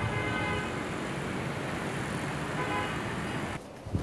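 Steady city street traffic noise from a dense stream of motorbikes and cars, with a few faint horn toots. It cuts off suddenly shortly before the end.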